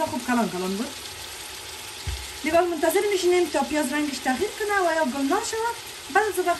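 Chopped onions sizzling and crackling in hot oil in a stainless steel pot. There is a single low thump about two seconds in.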